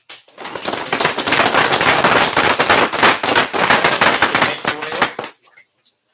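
Audience applauding, a dense run of many claps that builds over the first second and dies away about five seconds in.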